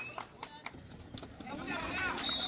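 Quick footsteps and scuffs of shoes on a kabaddi court mat during a raid, mixed with shouting voices of players and spectators.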